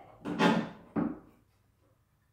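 A steel support tube scraping against its bar as the front of the skeleton is lifted off the temporary support: a scrape about half a second in and a shorter one about a second in.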